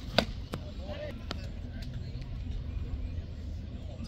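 A pitched baseball smacking into the catcher's mitt: one sharp pop just after the start, with a few fainter knocks and distant voices after it.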